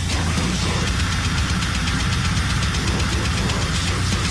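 Death metal recording playing loud: heavily distorted low guitars and bass over rapid drumming.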